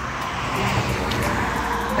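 A car driving by on the road: a steady rush of tyre and engine noise.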